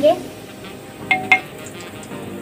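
A metal spoon clinking twice against the rim of an aluminium pressure cooker about a second in, each tap leaving a short metallic ring.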